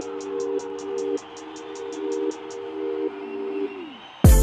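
Background music of held chords under fast high ticks, about five a second. The ticks stop partway through, and the chord slides down in pitch near the end.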